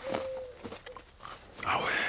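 Faint crunching and chewing as a slice of raw sweet potato is bitten and eaten, after a short steady tone at the start. A voice speaks briefly near the end.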